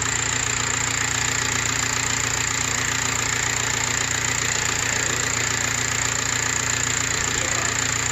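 Audi A4 B7 engine idling steadily, picked up through a wooden stick pressed against the alternator. The alternator runs smoothly with no grinding: its bearing has been replaced.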